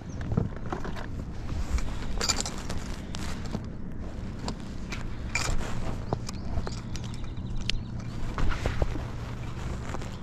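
Irregular knocks, clicks and rustles of a caught bass and fishing gear being handled in a plastic fishing kayak, over a steady low hum.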